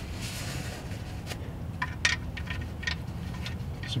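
A paper towel rustling briefly near the start, then a few faint, scattered small clicks from handling work under a car, over low steady background noise.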